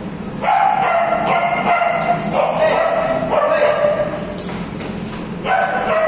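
Dogs vocalizing in play: long drawn-out, slightly falling whining cries, starting about half a second in and running for several seconds, then starting again near the end.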